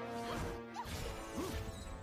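Animated-film fight soundtrack: music with held tones, a crash-like hit and whooshing effects, with a second sharp hit about a second and a half in.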